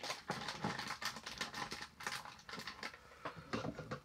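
A fast, irregular run of light clicks and taps close to the microphone, thinning out a little past the middle.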